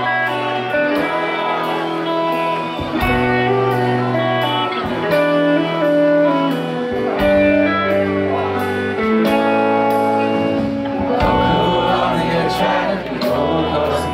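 Rock band playing live: electric guitar and bass notes over a steady drum beat, the texture thickening in the last few seconds.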